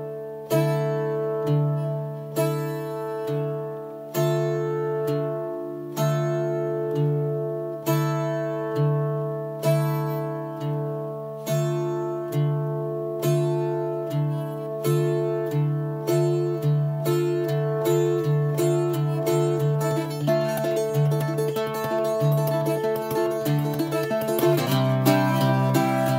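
Irish bouzouki playing: single plucked notes about once a second over ringing drone strings, quickening into rapid picking late on and moving to a louder, lower chord near the end.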